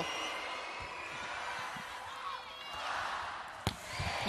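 Arena crowd noise during a volleyball rally, with a single sharp smack of the ball being struck about three and a half seconds in.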